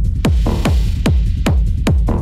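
Dark techno music: a deep kick drum on a steady fast beat, each hit dropping in pitch, with a hissing noise swell through the first second.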